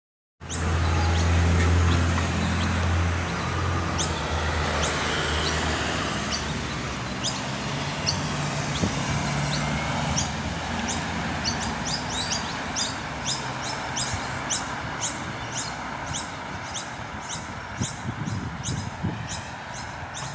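Outdoor traffic noise, with a vehicle's low engine hum loudest in the first few seconds, and a bird chirping over and over at an even pace through the second half.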